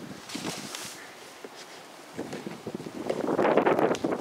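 Soft, irregular rustling and handling noise mixed with wind on the microphone, as fingers work at a padded vinyl door panel up close. It dips quieter in the middle and grows louder near the end.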